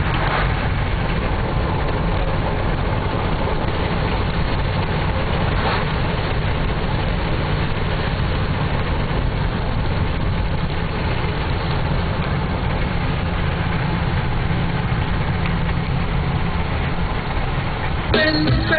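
Steady engine and tyre noise heard inside the cabin of a car driving along at road speed.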